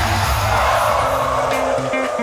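A live pop song through the concert PA at its final bars, its bass dropping out about a second in, with the crowd cheering loudly over it.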